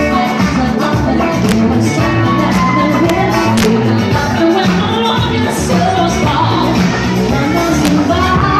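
Loud amplified live band music with a guitar and a singer, running steadily.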